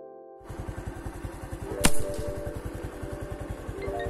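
Background music with a fast, even pulsing noise underneath, and a single sharp snap about two seconds in, the loudest sound: a slingshot being shot.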